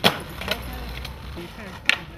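Skateboard decks clacking on asphalt: a sharp smack right at the start as a board lands, a lighter clack about half a second in, and another sharp clack just before the end as a second board is popped into a flip.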